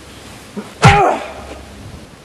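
A man's sudden, short grunt a little under a second in, with a sharp onset and falling in pitch, as one fighter strikes the other pinned on the ground.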